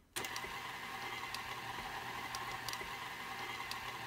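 KitchenAid Artisan stand mixer's motor running steadily, its dough hook kneading sticky bread dough in the bowl. The sound starts abruptly just after the beginning, with a low hum and a few faint ticks.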